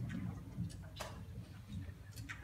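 A few sharp clicks over a low murmur of room noise, with no singing; the strongest click comes about a second in.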